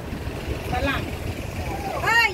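Long-tail boat engine running steadily with a low rumble, with faint voices about a second in.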